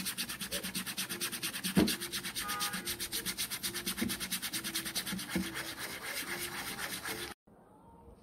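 A toothbrush scrubbing back and forth through a stain-removal paste on wet white cotton cloth, in quick, even strokes about seven a second. The scrubbing stops abruptly near the end.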